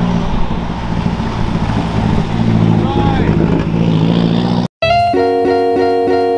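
Cars driving by on an expressway ramp, with a steady low engine and exhaust note over tyre and road noise. About five seconds in it cuts off abruptly, and plucked-guitar music starts.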